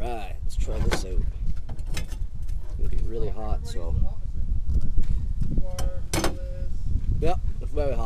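Short stretches of a man's voice, vocal sounds rather than clear words, over a steady low rumble, with a few sharp clicks.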